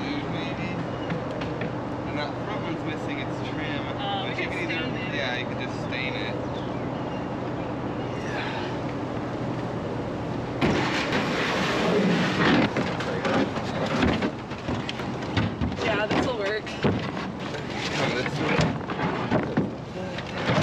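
A steady low hum, then about halfway through a louder run of irregular thumps, knocks and scraping as a large wooden cubby bookshelf is lifted and pushed into a pickup truck's bed.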